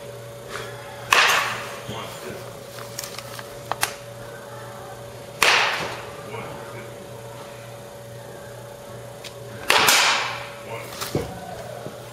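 Baseball batting practice: three sharp hits of bat on ball, about four seconds apart, each with a short fading tail, over a steady hum.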